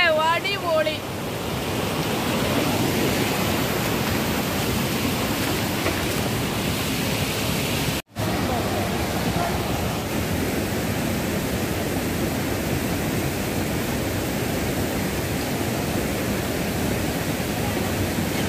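Steady rush of fast water over rocks in a mountain stream and small waterfall. The sound cuts out briefly about eight seconds in, then resumes unchanged.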